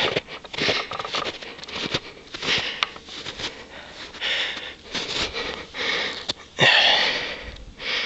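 A person breathing hard close to the microphone, one noisy breath after another at irregular intervals of about half a second to a second.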